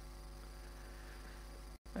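Steady low electrical mains hum and faint background hiss, with no other distinct sound; the audio cuts out for an instant near the end.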